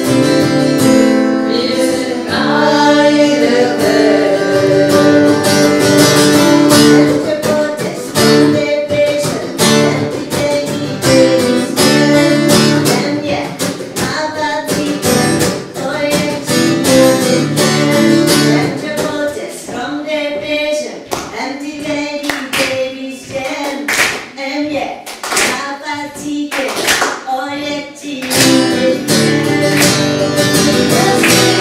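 Strummed acoustic guitar with a woman singing lead and a group of women's voices singing along. In the last third the rhythmic guitar strumming stands out more and the singing thins out.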